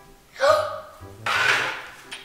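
A child's short voiced sound about half a second in, then a breathy, gasp-like sound, over background music with a low bass line.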